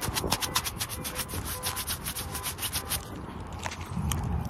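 Handling noise on a phone whose lens is covered: a fast, even run of scratchy rubs across the microphone, about ten a second. It eases into a softer rustle after about three seconds.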